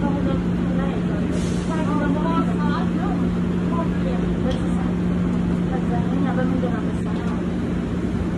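Steady low hum inside an airport shuttle train car, with passengers talking over it, mostly in the first few seconds.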